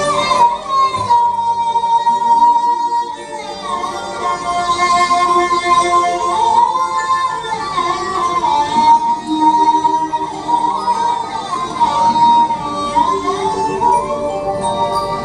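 Live Indian folk ensemble music of harmonium, keyboard, tabla, acoustic guitar and bowed strings. One melody line holds long notes and slides smoothly between them over sustained accompaniment.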